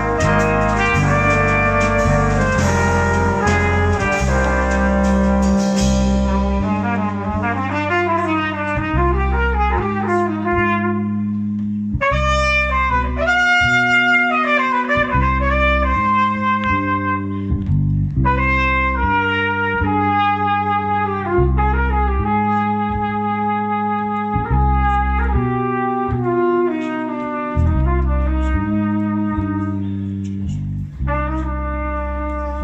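Live jazz brass band of trumpets, flugelhorns and trombones with bass guitar and drum kit. The cymbals and full band drop away about six seconds in, leaving a single horn playing a solo line over bass guitar and held brass notes.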